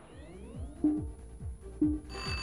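Electronic cartoon sound effect: a quick rising chirp, then a run of short falling low tones, about three a second.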